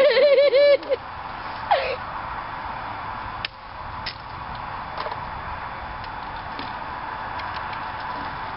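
A quick burst of high-pitched giggling at the start, then steady outdoor background noise with a few faint clicks.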